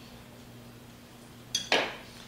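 A metal kitchen utensil clinking against hard kitchenware: two sharp clinks in quick succession about one and a half seconds in, the first with a brief ring.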